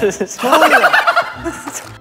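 A group of young men exclaiming and laughing excitedly, with a quick run of high, rapid cackling in the middle.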